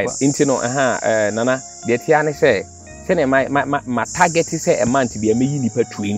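Steady high-pitched insect chorus, growing louder about four seconds in, under a man's continuous speech.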